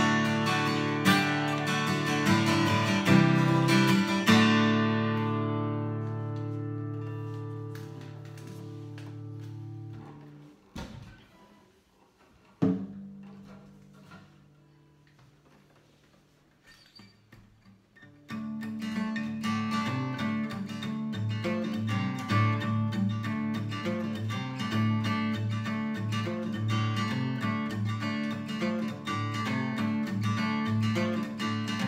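Strummed chords on a Seagull S6+ acoustic guitar (solid spruce top, cherry back and sides), the last chord left to ring and fade over several seconds. A few handling knocks and thumps follow as the guitars are swapped. About eighteen seconds in, strumming starts on a Takamine EF440 acoustic guitar (solid cedar top, mahogany back and sides) and carries on steadily.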